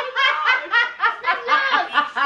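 Laughter, in quick repeated pulses of about five a second.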